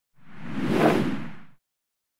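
A single whoosh sound effect for the logo intro, with a low body under it. It swells, peaks just under a second in, and fades out after about a second and a half.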